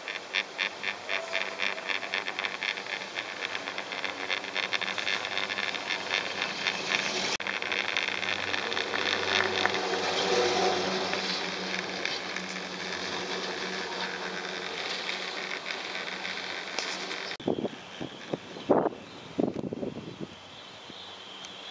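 Four-seater chairlift riding over a tower's roller assembly: a rapid, regular clatter of about three to four clicks a second that dies away after about seven seconds, leaving a steady rushing noise of the moving chair and rope. A few loud thumps come near the end.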